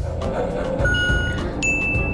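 Electronic tones from a handheld toy lie detector giving its verdict: a short steady beep about a second in, then a higher, longer tone near the end. Background music with a steady beat runs underneath.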